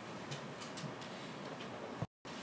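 Faint room hiss with a few soft, irregular ticks.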